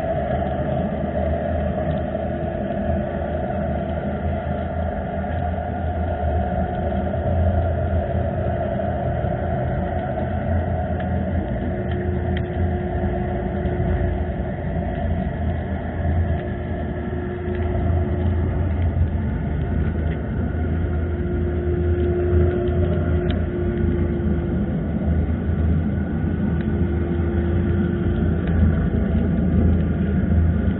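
Underwater harbour noise picked up by a camera below the surface: a steady low rumble with a faint hum that fades in and out several times, and a couple of faint clicks.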